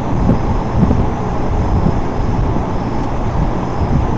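Steady rushing air noise, heaviest in the low end, from an electric box fan running close to the microphone.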